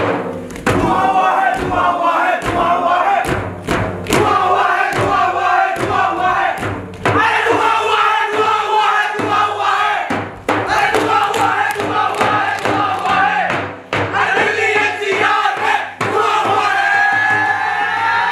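A group of students chanting and shouting together in unison, broken by sharp percussive beats and stamps, with a few brief pauses between phrases.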